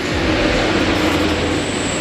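A steady low mechanical running noise, unchanging throughout, like an engine or machine running.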